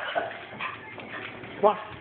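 A Shih Tzu on a hardwood floor: faint, scattered short sounds from the dog, with its claws tapping on the wood.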